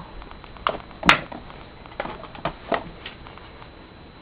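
A few short, sharp taps and clicks at irregular intervals, the loudest about a second in.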